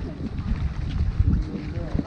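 Wind buffeting the microphone, a low rumble that comes and goes in uneven gusts.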